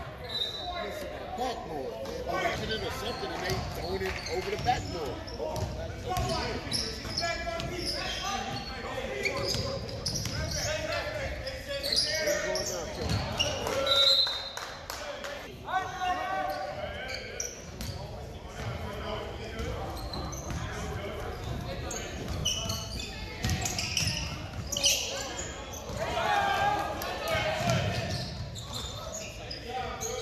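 Basketball game in a gym: a basketball bouncing on the hardwood floor amid indistinct voices of players and spectators, echoing in the large hall.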